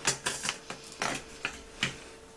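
About half a dozen sharp clicks and taps of small makeup items being put down and picked up on a hard table surface, over a faint steady hum.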